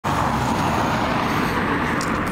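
A car driving past on the road: steady engine and tyre noise.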